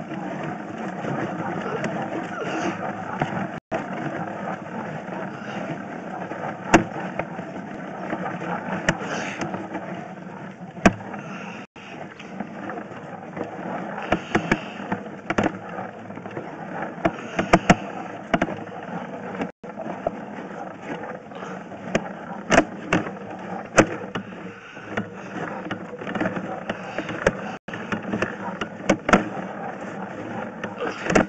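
A drain inspection camera's push rod being pulled back out of a sewer main and wound in: a steady noise broken by many sharp clicks.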